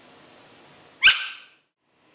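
A dog barking once, a single short sharp bark about a second in.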